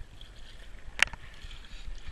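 Kayak paddle strokes: water swishing and dripping off the paddle blades as the boat glides over calm water, with one sharp click about a second in.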